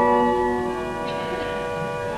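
The Romsey Abbey pipe organ playing sustained chords, which grow softer about half a second in.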